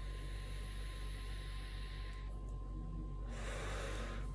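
A person taking a long drag on a vape: a soft hiss of drawn air for about two seconds, then a breathy rush as the vapor is blown out near the end.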